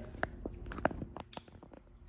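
A few faint, scattered small metallic clicks from a necklace chain and clasp being fumbled at the back of the neck while someone tries to fasten it.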